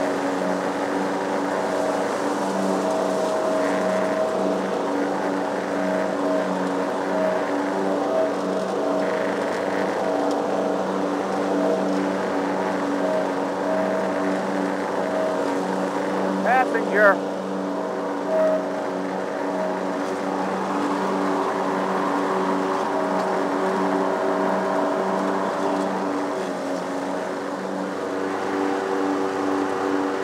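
Lawn mower engine running steadily while cutting grass, with a few brief sharp sounds about halfway through.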